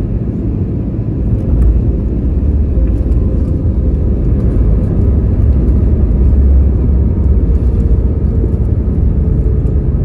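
Cabin noise of a jet airliner rolling down the runway after landing, heard from a seat by the wing: a loud, steady low rumble with engine hum. The rumble swells about a second and a half in, and a faint engine tone slowly sinks in pitch.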